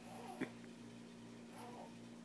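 Faint short whimpering sounds from a young child, twice, with a small click about half a second in, over a low steady hum.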